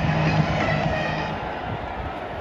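Large stadium crowd roaring as a football kickoff gets under way, easing off gradually over the two seconds.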